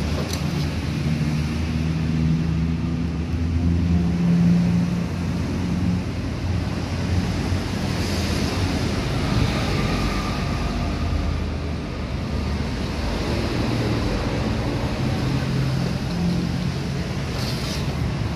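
Steady low rumble of an unseen motor, with a low hum that wavers in pitch, and a brief knock near the end.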